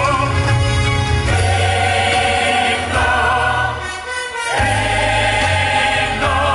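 A choir sings held chords over band accompaniment with a strong bass line in a Christian hymn. The music dips briefly about four seconds in, when the bass drops out, then comes back.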